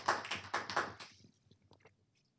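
Scattered audience applause dying away within about a second, followed by a few faint clicks.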